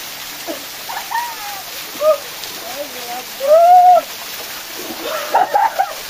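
Small waterfall pouring and splashing onto rock and onto a man standing under it, a steady rush of falling water. Over it come his whooping calls and laughter, the loudest whoop a little past the middle and a burst of laughter near the end.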